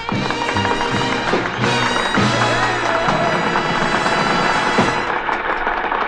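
Swing band music finishing a number, with many sharp claps from an audience applauding over it.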